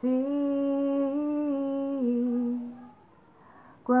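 A woman humming a slow melody unaccompanied, holding long notes that step down in pitch, then trailing off about three seconds in. She starts singing again at the very end.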